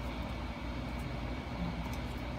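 Steady low room hum, like a fan or air conditioner running, with a couple of faint clicks from plastic headset parts being handled.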